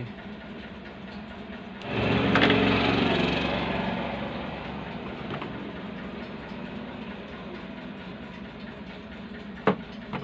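A small engine or motor starts suddenly about two seconds in and runs with a low, even drone that fades slowly over the next few seconds, over a steady low hum.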